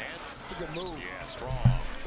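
Quiet game audio from an NBA broadcast: a basketball bouncing on the hardwood court, with a few faint squeaks midway and a low thump near the end.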